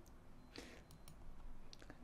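A few faint computer mouse clicks over low room noise, about half a second in and again near the end, as a presentation slide is advanced.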